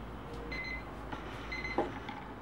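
Cube-shaped digital alarm clock sounding its alarm: short high electronic beeps, about one a second. Near the end there are a couple of short knocks as the clock is grabbed.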